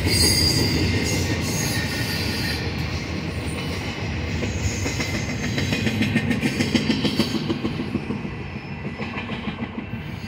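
Double-stack intermodal well cars rolling past on steel rails: a steady rumble with rapid clacking of wheels over the track. It fades near the end as the last cars pass and the train moves away.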